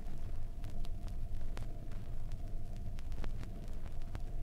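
Surface noise of a 7-inch vinyl record played at 33⅓ RPM through a silent stretch of groove: scattered clicks and pops over a steady low rumble.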